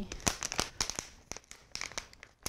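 Plastic packaging around a bottle of tire glue crinkling and crackling as it is handled and opened, in irregular bursts that thin out after about a second.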